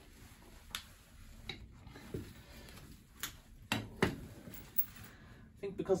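Bolt cutters bearing down on a hardened 6 mm chain inside a plastic sleeve: a few faint clicks, then two sharper snaps about four seconds in as the jaws break through the chain.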